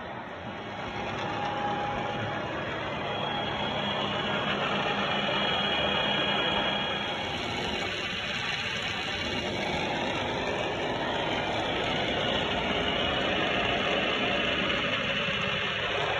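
Huron NU4 universal milling machine running under power: a steady mechanical drone from the spindle and gearbox, with faint whining gear tones that come and go. It grows a little louder about a second in.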